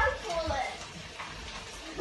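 Voices talking briefly near the start and again at the end, over a steady hiss of tap water running into a kitchen sink.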